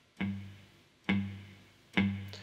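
Three-string cigar box guitar in open G-D-G tuning, its open strings plucked three times about a second apart, each note ringing and dying away.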